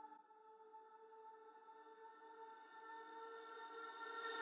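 Faint sustained synth pad of several held tones, slowly swelling in loudness: the quiet start of an electronic dance mix intro.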